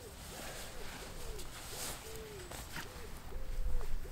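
Pigeons cooing: a run of soft, short coos repeating a few times a second, with a little rustling of a padded jacket being handled.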